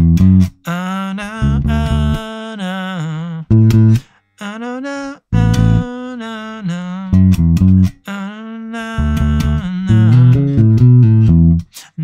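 A recorded song playing back: a singer's vocal phrases over an electric bass line, with the bass slipping a short lick into a break in the vocal before the singer comes back in.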